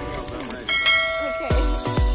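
A bright bell chime rings out about two-thirds of a second in, over background music. Near the end, a beat with deep, heavy bass kicks comes in.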